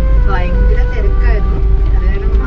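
Moving car heard from inside the cabin: a steady low engine and road rumble, with a voice or music over it.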